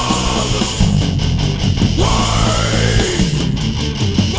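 Hardcore band playing, led by heavy guitars, with a rising pitch glide partway through.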